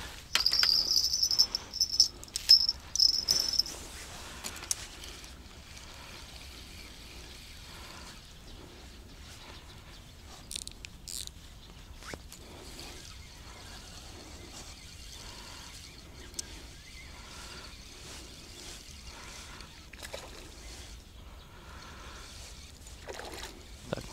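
Cricket chirping close by, a loud high-pitched trill in quick chirps for the first few seconds, then fainter insect sound with a few small clicks.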